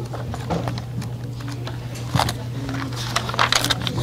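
A steady low electrical hum runs through the room, with scattered soft clicks and taps.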